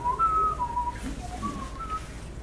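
A person whistling a few short notes, the pitch stepping up and down.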